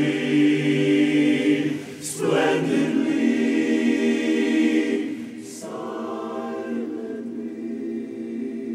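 Men's barbershop chorus singing a cappella in close four-part harmony, holding long chords. There is a brief break about two seconds in, another just after five seconds, and then a softer chord for the rest.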